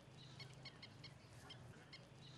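Faint, short chirps of caged budgerigars, about eight in quick, uneven succession, over a faint low hum.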